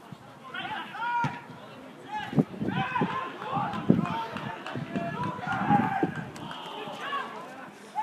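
Players' shouts and calls on a grass football pitch during open play, with several sharp knocks of the ball being kicked; the loudest knock comes about four seconds in.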